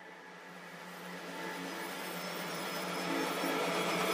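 Reversed pop song opening with a swelling wash of backwards reverb and synth, growing steadily louder over a low sustained tone.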